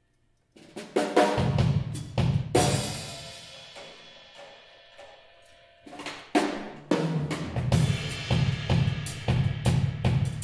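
Drum kit playing a solo intro: a few sharp hits after a brief pause, a cymbal crash about two and a half seconds in that rings and fades, then hits resuming and settling into a steady beat in the second half.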